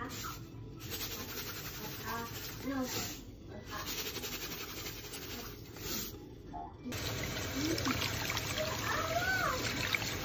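Water poured from a jug onto salt on a plate, a steady splashing that starts about seven seconds in. Faint voices can be heard in the background.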